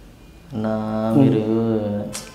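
A man's drawn-out "uhh" held at one steady low pitch, starting about half a second in and lasting about a second and a half: a hesitation sound while he thinks.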